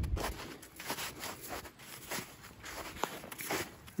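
Footsteps walking across wet snow and grass: short, irregular soft steps.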